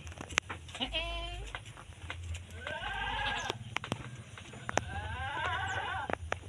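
Goats bleating: three wavering calls of about a second each, a couple of seconds apart, with a few sharp clicks between them.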